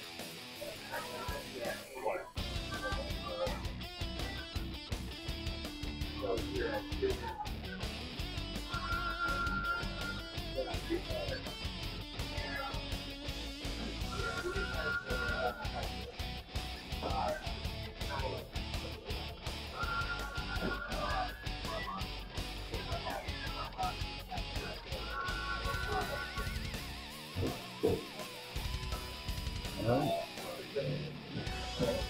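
Background rock music with electric guitar over a steady drum beat, with fuller bass coming in about two seconds in; some voices are mixed in underneath.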